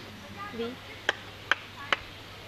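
Three sharp clicks, evenly spaced about 0.4 s apart, starting about a second in.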